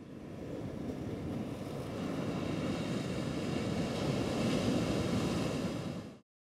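A steady rushing noise with no clear pitch or rhythm, fading in and swelling slowly before it cuts away.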